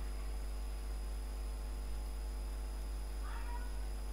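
Steady low electrical mains hum with a buzz of overtones from the recording setup, with a faint short sound a little over three seconds in.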